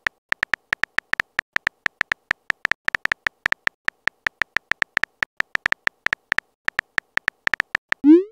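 Keystroke sound effect of a texting app: rapid short clicks, each with a brief high beep, about five a second as a message is typed out letter by letter.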